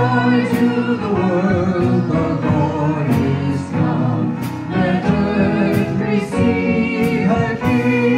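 A Christmas carol sung by song leaders with a live band of keyboards, drums, bass and guitar. The voices come in right at the start after a keyboard introduction, and drum hits fall about every second and a half.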